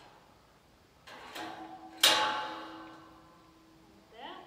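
A steel pipe gate clangs once about two seconds in and rings on with a slowly fading metallic tone, after a short rattle and click of metal about a second in.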